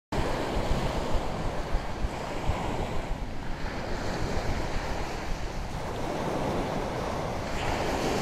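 Sea surf washing onto a beach in a steady rushing noise, with wind buffeting the microphone in low rumbles.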